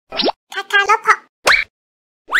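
Channel logo sting: rising 'plop' pops, one near the start and one about a second and a half in, with a short, squeaky, voice-like phrase between them.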